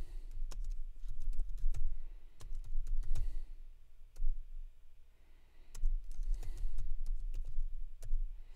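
Typing on a computer keyboard: irregular runs of key clicks with dull thuds from the keystrokes, pausing briefly a little past the middle.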